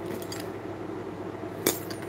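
Metal hardware and a dangling metal key charm on a leather satchel clinking softly as the bag is turned in the hands, with one sharper click near the end.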